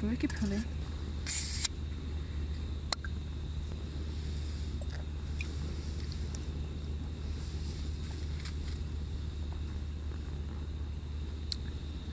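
Steady low hum of a small portable gas stove burning under a grill of charring peppers. A short hissing rustle comes about a second and a half in, and a single sharp click shortly after.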